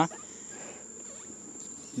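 Faint, steady insect sound: a continuous high-pitched insect trill with the low buzz of honeybees around a hive being smoked.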